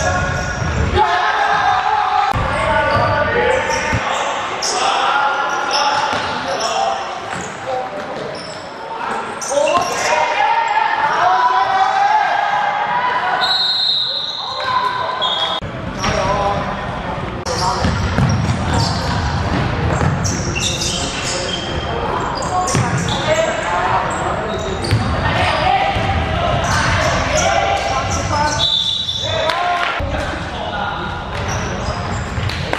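Basketball game in a large echoing sports hall: a basketball bouncing on the wooden court amid players' shouts and onlookers' voices, with a brief high tone about halfway through.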